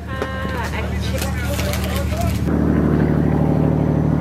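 Ferry engine running with a steady low drone, with voices over it in the first half. About two and a half seconds in, the drone grows louder and fuller.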